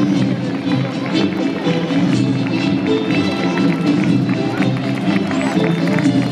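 A military march playing, with the tramp of the marching column's boots on the road.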